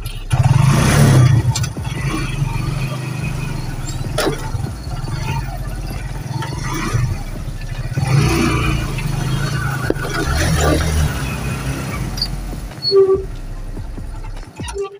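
A motor vehicle's engine running as it drives over a rough dirt road, heard from inside the vehicle, its note swelling a few times, with occasional knocks and rattles.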